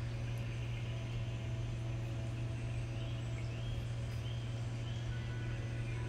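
A steady low hum with faint, short high chirps repeating roughly every half second from about three seconds in.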